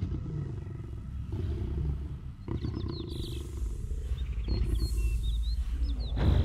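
Trailer sound design: a large animal's roar over a deep, continuous rumble. Short bird-like chirps come in about halfway through.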